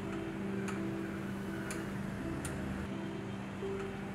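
Background music: a long held low note with softer higher notes coming and going, and a light tick roughly once a second.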